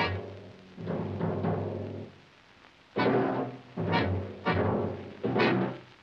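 Orchestral cartoon score with timpani, played as a string of about five short phrases with brief gaps between them.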